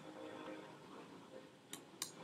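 A computer mouse button clicking sharply about three-quarters of the way in and again right at the end, over faint steady room noise.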